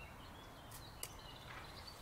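Quiet outdoor ambience with faint, short bird chirps in the background and a light click about a second in.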